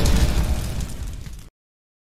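Fiery explosion sound effect for a logo intro animation, a deep burst that fades and cuts off suddenly about one and a half seconds in.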